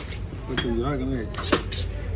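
Heavy fish-cutting knife knocking and clinking against a wooden chopping block as tuna loin is cut, with two sharp knocks about a second and a half in.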